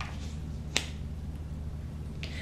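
A single sharp click about three-quarters of a second in as a tarot card is set down on a cloth-covered table, over a steady low hum.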